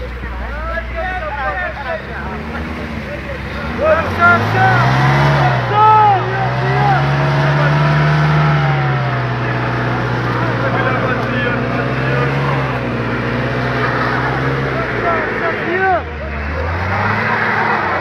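Car engine revving hard and held at high revs for about ten seconds, easing off briefly near the end and then revving up again, with men shouting over it.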